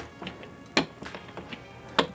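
Rubber roller worked over a mylar sheet on a fluid-mounted film negative in a scanner holder, with two sharp knocks about a second apart, under faint background music.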